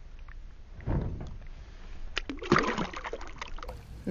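Lake water sloshing and splashing at the side of a boat as a bass held in the water kicks free and swims off. There is a short splash about a second in, then a longer, louder stretch of splashing from about two seconds in.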